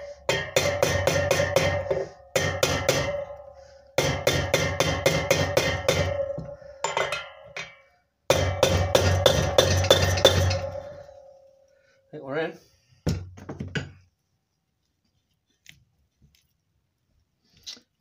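Rapid hammer taps on a socket used as a drift, driving a shielded ball bearing into the BSA Bantam D7's rear wheel hub. They come in four runs of about five taps a second, each run a couple of seconds long, over a steady metallic ringing note, and are followed by a few single knocks.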